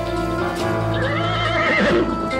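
A horse whinnies once, a wavering call lasting about a second that starts about a second in, over steady background music.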